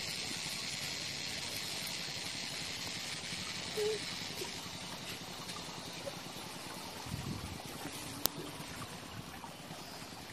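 A steady outdoor background hiss. There is a brief low thump about seven seconds in and a single sharp click a second later.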